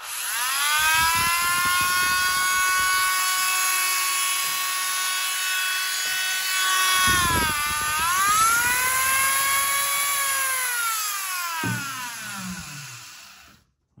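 Dremel Moto-Tool rotary tool running at speed with a high, steady whine, under test after a broken part inside was replaced. About seven seconds in its pitch dips and comes back up, and over the last few seconds it winds down in pitch and stops.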